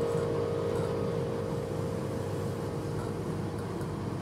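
Final chord of a slow jazz ballad on a Roland RD-150 stage piano dying away, fading out over the first second or two and leaving low room murmur.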